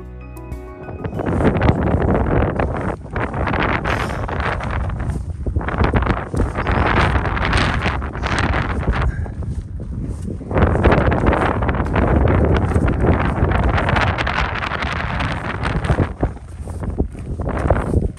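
Strong wind buffeting the microphone, starting about a second in and coming in gusts that rise and fall.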